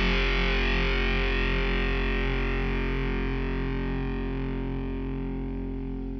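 A distorted electric guitar chord through effects, held and fading steadily away with no new notes struck.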